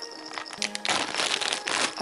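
Packaging crinkling as it is handled, loudest from about one second in, over soft background music.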